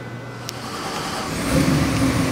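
Borla stack-injected LS3 376 cubic-inch V8 on an engine dyno being started: a click about half a second in, then it catches and fires about a second and a half in, running loud and steady after.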